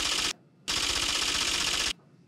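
Typewriter-style clicking sound effect as a caption types itself out on screen letter by letter. It comes in two fast runs of clicks, a short pause about a third of a second in, then cuts off just before the end.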